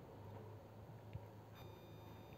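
Near silence: room tone with a faint steady low hum. A faint high steady whine comes in about three-quarters of the way through.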